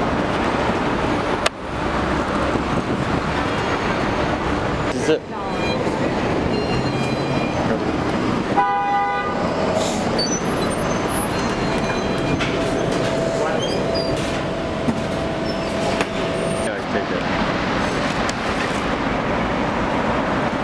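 Busy city street while walking: steady traffic and crowd noise with passers-by's voices, and a vehicle horn honking briefly about nine seconds in. A single steady tone follows a few seconds later.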